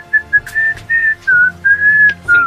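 A whistled tune: a string of short, clear notes stepping up and down, with a few slides in pitch, ending on a longer held note.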